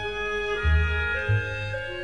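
An orchestra in a zarzuela number plays held chords on strings and winds while the singer rests, with a low bass note sounding twice.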